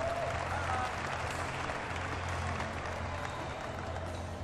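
Arena crowd applauding, a dense steady clapping that eases slightly toward the end.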